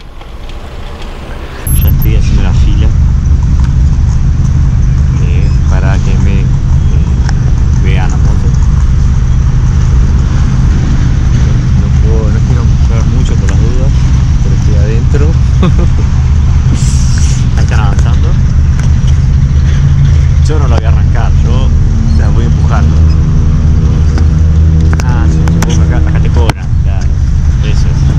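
Loud, steady low rumble of wind buffeting the microphone while riding a motor scooter, starting suddenly about two seconds in. The scooter's engine and passing traffic sit faintly underneath.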